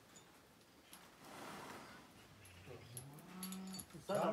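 A young bull under restraint, quiet: a heavy breath about a second in, then a low rising groan held for about a second near the end.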